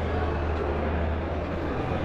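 A steady low mechanical hum with a rumbling noise over it, even in level throughout.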